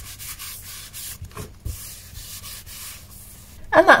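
Hands rubbing and smoothing a paper print down onto a journal cover, in repeated strokes. A woman begins speaking near the end.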